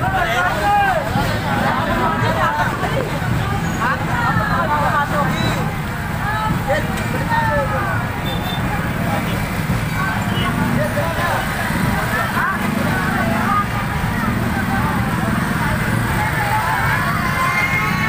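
Crowd of people talking and calling out all at once around a street procession, with a steady low engine rumble underneath.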